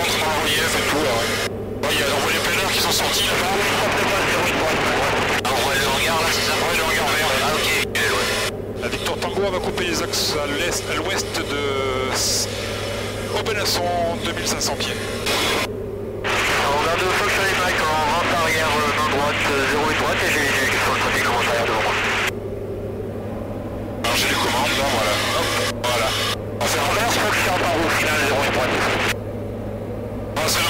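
Steady drone of a Diamond DA40's engine and propeller in the cockpit, recorded through the intercom, with indistinct radio voices. The sound above the drone drops out briefly several times, as if the intercom is gating.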